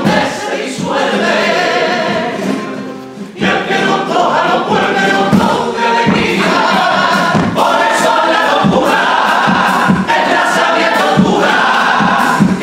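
Comparsa male choir singing a Cádiz carnival pasodoble with guitar accompaniment. The singing drops away briefly about three seconds in, then comes back at full voice.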